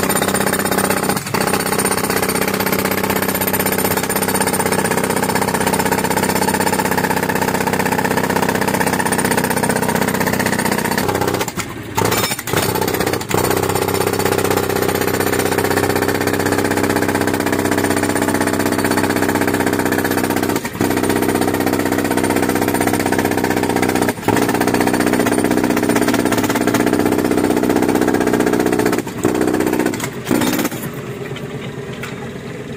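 Compressor-fed pneumatic breaker (jackhammer) hammering continuously into the soil at the bottom of a hand-dug well. It stops briefly about twelve seconds in, with a few short breaks later.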